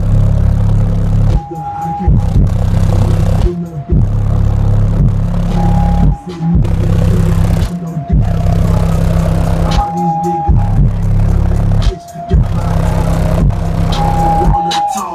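Two RE Audio SEX v2 subwoofers, driven by a Forx 6000.1 amplifier, playing the deep bass of a hip-hop track loudly in a low-frequency test. The bass notes cut out briefly every couple of seconds.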